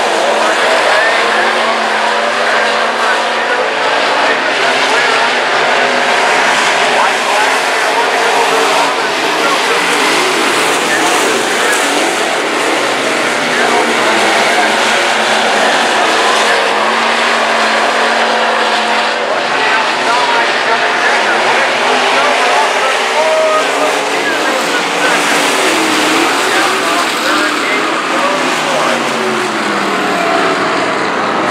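A pack of dirt-track stock cars racing, their engines running at speed with pitch that rises and falls as they go around the oval.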